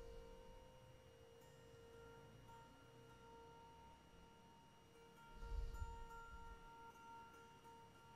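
Near silence with faint steady held tones, like a soft ringing drone under the meditation, and a brief low muffled thump about five and a half seconds in.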